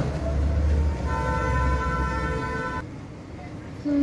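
A horn sounds one held, steady multi-pitched note for nearly two seconds, starting about a second in, over a low rumble.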